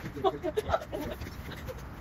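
A woman laughing in short, high-pitched bursts, mostly in the first second.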